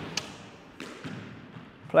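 Squash ball knocking around a squash court during a rally drill: a sharp knock just after the start and a softer one under a second in, each with a short echo off the court walls.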